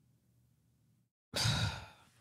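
After near silence, about a second in, a woman lets out a single breathy sigh of exhaustion that fades away.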